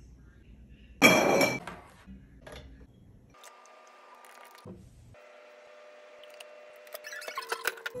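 Glass bottles clinking as they are handled: one sharp ringing clink about a second in, and a quick run of lighter clinks and taps near the end.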